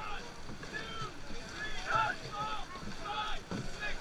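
Dragon boat crew shouting calls over water rushing and splashing along the hull as the boat is paddled hard.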